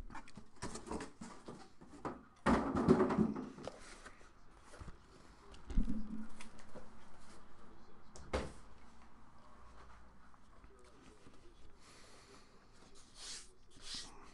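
Cardboard shipping boxes being handled and set down on a table: scattered scrapes and knocks, a scraping rustle about three seconds in, and the loudest sound, a thump, about six seconds in.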